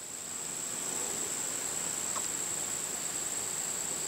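A steady, high-pitched insect drone, one unbroken tone that swells in over the first second and then holds level.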